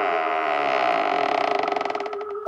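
Wooden door creaking slowly open: one long drawn-out creak that sinks slightly in pitch, then breaks into rapid clicks that slow near the end.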